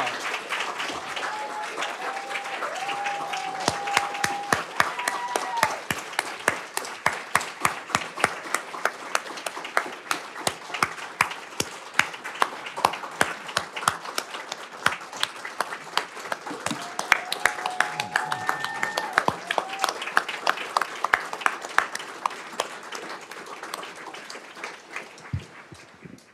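A roomful of people applauding steadily for about twenty-five seconds, with voices calling out over the clapping twice. The clapping thins out near the end.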